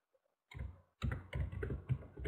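Computer keyboard typing: a quick run of keystrokes starting about half a second in, coming faster from about a second in.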